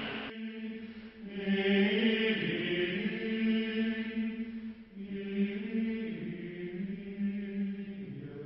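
Background music: slow chanted singing in long held notes, moving to a new pitch every couple of seconds.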